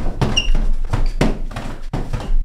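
A rapid, irregular run of knocks and thumps from people scuffling and bumping against a wall, with a short squeak about half a second in.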